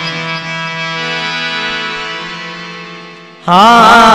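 Devotional bhajan music: a harmonium holds steady chords that slowly fade away. About three and a half seconds in, a new piece breaks in suddenly and much louder, with a wavering, sliding melody.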